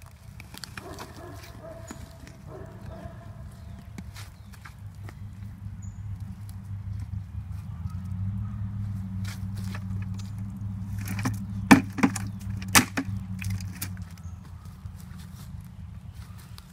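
Steel shovel digging into clay soil: scraping, crunching blade strokes, with three sharp knocks in quick succession about three-quarters of the way through, over a steady low hum.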